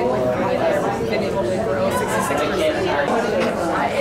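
Babble of many voices talking at once: several small-group conversations overlapping in a room, with no single voice standing out.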